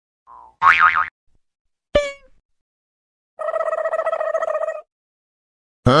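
Cartoon sound effects: a wobbling boing about half a second in, a sharp twang falling in pitch near two seconds, then a steady buzzing tone for over a second.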